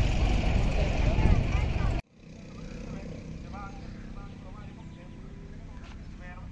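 Outdoor background noise: a loud low rumble with faint voices in it, cut off abruptly about two seconds in. A much quieter background follows, with scattered faint voices talking in the distance.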